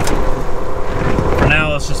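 Semi truck's diesel engine and road noise, a steady drone heard inside the cab while driving.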